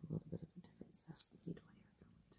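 A person's soft voice close by: a few brief murmurs, breaths and whispers in quick succession, trailing off about a second and a half in.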